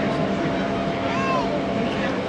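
Open-air tour tram running steadily, a constant motor hum over rolling noise. A short rising-and-falling call sounds about a second in.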